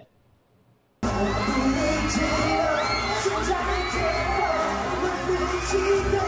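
Near silence for about a second, then live pop music cuts in suddenly: a boy band singing a K-pop song over a backing track with a steady beat, with crowd noise behind.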